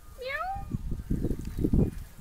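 Domestic cat meowing once: a short call that rises in pitch, about a quarter of a second in.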